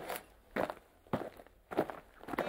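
Footsteps on a wet floor: about four steps, roughly half a second apart.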